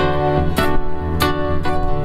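Solo classical guitar playing a piece: plucked notes struck about every half second, ringing over held low bass notes.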